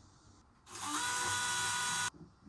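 Cordless drill-driver starting up about two-thirds of a second in, its pitch rising briefly as the motor spins up and then holding steady, driving a screw into the wooden speaker cabinet.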